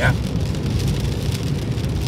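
Rain falling steadily on a car's roof and windscreen, heard inside the cabin, over the low, even rumble of the car driving on a wet road.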